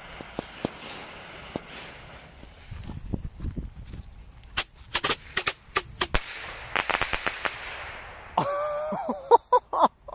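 A bundle of Black Cat bottle rockets set off together: a steady hiss as the fuses are lit and burn, a low rush about three seconds in, then a quick string of sharp pops over about two seconds as the rockets burst in the air.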